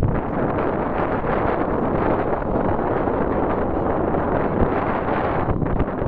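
Wind buffeting the microphone: a steady, loud rush that eases just before the end.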